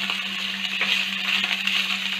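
Baby corn pieces sizzling in hot oil in a non-stick pan, stirred with a silicone spatula that gives a few faint taps against the pan. A steady low hum runs underneath.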